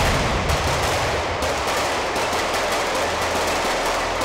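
Rapid gunfire from several firearms on a shooting range, shots coming so close together they run into one another in a continuous volley.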